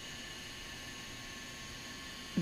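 Steady faint hiss with a thin electrical hum: background room tone and recording noise, with no distinct event.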